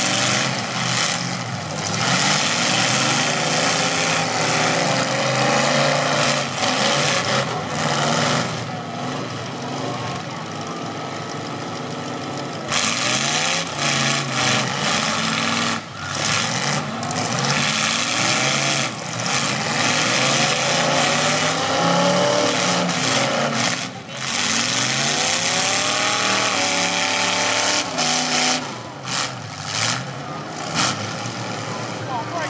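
Several demolition derby cars' engines revving hard, rising and falling in pitch again and again as the cars push and ram each other, over a steady din of crowd and engine noise.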